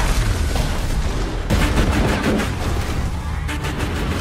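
Loud, dense film-trailer sound mix: dramatic score layered with heavy low booms and action impact effects, with a sharp hit about a second and a half in and a quick run of hits near the end.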